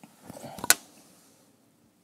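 Soft rustling of movement followed by a single sharp click, then near quiet.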